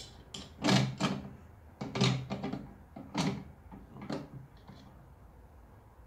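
Red aluminium flip stop of an INCRA 1000SE miter-gauge fence being slid along the fence and set against its rule: four short sliding, knocking sounds about a second apart, fading out over the last two seconds.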